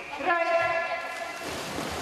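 A race start signal: a pitched, horn-like tone about a quarter second in, held for under a second. Splashing follows as swimmers dive off the starting blocks into the pool.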